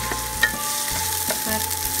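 Sliced onion and garlic sizzling in olive oil in a square nonstick pan, with a spatula scraping and tapping against the pan as it stirs; one sharper tap about half a second in.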